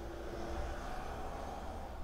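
Quiet, steady outdoor background noise with a low hum and no distinct sound events.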